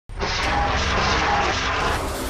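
A loud, steady jet-like roar with a faint whistling tone, starting abruptly.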